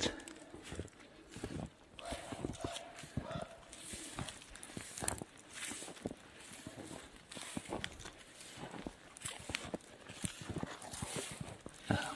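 Footsteps crunching through snow and dry grass: a steady run of short, irregular crunches as someone walks.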